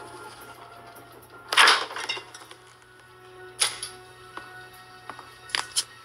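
Quiet, suspenseful film score with sudden sharp hits: a loud burst about a second and a half in, another sharp hit halfway through, and two quick hits close together near the end.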